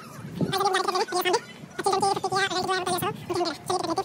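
A high-pitched voice making a run of short, wavering calls or words.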